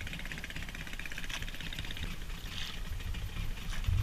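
Small boat engine idling steadily.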